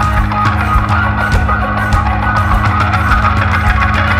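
Instrumental passage of a rock song with no singing: a steady drum beat over held bass notes, with guitar.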